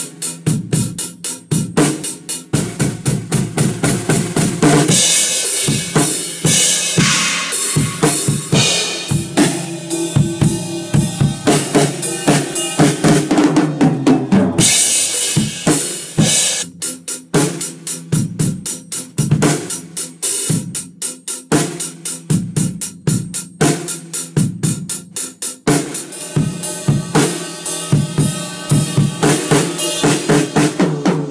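Drum kit played in a steady rock beat of kick and snare strikes. Bright cymbal wash rides over it from about five to nine seconds in, and again briefly around fifteen seconds.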